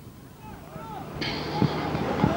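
Faint, distant voices of players calling out across an outdoor Gaelic football pitch, with a steady hiss that sets in a little over a second in.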